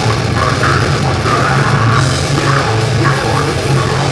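Live metal band playing: distorted electric guitars, bass and drum kit in a loud, dense, unbroken wall of sound.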